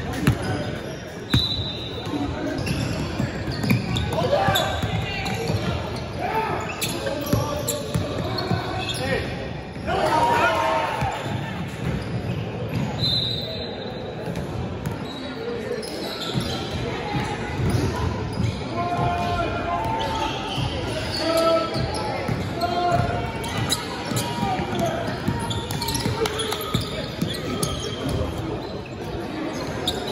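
Basketball game in a large gym: the ball bouncing on the hardwood court, with players calling out, all echoing in the hall.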